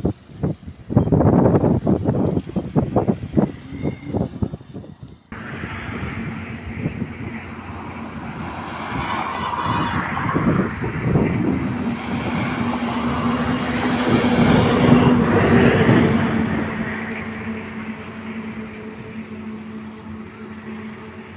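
Wind buffeting the microphone in gusts for about five seconds. After a sudden cut, road traffic on a highway: a steady low engine hum, with passing vehicles growing louder to a peak about fifteen seconds in, then fading.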